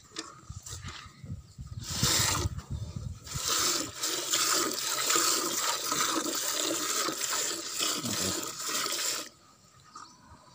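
Milk streams squirting from a water buffalo's teats into a steel pot during hand milking: short separate spurts at first, then a continuous rushing of milk into the pot that stops shortly before the end.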